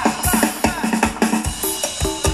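Live Thai ramwong band music: a drum kit keeps a steady quick beat, about three strokes a second, under held instrument notes.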